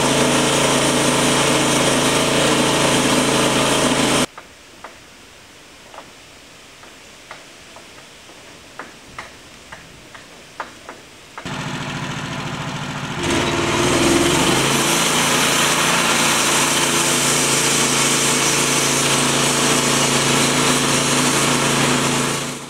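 Gasoline engine of a portable bandsaw sawmill running steadily, cutting off abruptly about four seconds in. A quieter stretch with a dozen or so sharp clicks and knocks follows. Then the engine runs again and, about thirteen seconds in, the sound grows louder and fuller as the band blade cuts through a basswood log.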